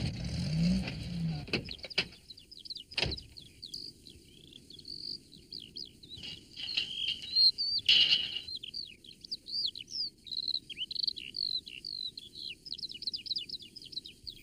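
Small songbirds chirping and twittering in quick, high, overlapping calls, a soundtrack birdsong effect. A short low hum sounds at the very start, and there are brief knocks about three seconds in and again near eight.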